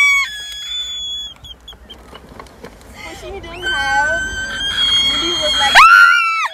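A woman's high-pitched squeals of delight: one ends just after the start, a long squeal rises from about halfway, and a loud one breaks out near the end.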